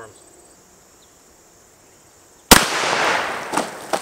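A single 12-gauge shotgun shot, a Mossberg 500 firing a Winchester Deer Season 1 1/8 ounce rifled lead slug, about two and a half seconds in. A second or so of noisy trailing sound and two sharp knocks follow the shot.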